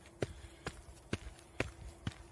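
A runner's footfalls, about two a second, each a short sharp thud, from a deliberately bouncing stride: a gait that wastes energy going up instead of moving forward.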